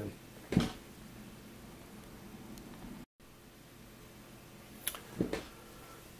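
Quiet room tone with a faint steady hum, broken by a soft knock about half a second in and two more clicks near the end: coax cables and SMA connectors being handled as an inline RF filter is fitted. The sound drops out completely for a moment midway.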